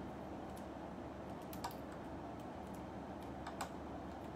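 Light, sparse clicks of a Metal Build Gundam action figure's stiff joints and parts being worked by hand, a handful of single clicks with two close together near the end, over low room noise.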